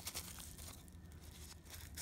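Faint rustling and crinkling of a paper towel rubbed over a fountain pen nib, wiping off dried ink crud.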